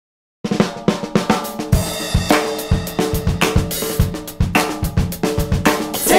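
Opening of a soul/R&B-funk recording, led by a drum kit playing a groove with snare, bass drum, hi-hats and cymbals, with pitched instruments underneath. It starts after about half a second of silence.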